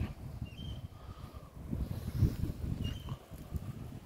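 Quiet outdoor background: a low, irregular rumble with two faint, short, high chirps, one about half a second in and one near the end.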